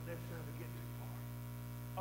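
Steady low electrical mains hum with fainter overtones, constant through the pause in speech.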